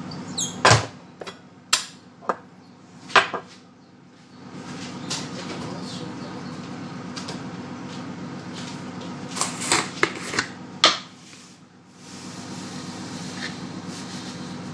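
Kitchen cabinet doors and things inside being knocked and handled: a few sharp knocks in the first few seconds and another quick cluster about ten seconds in, over a steady low hum.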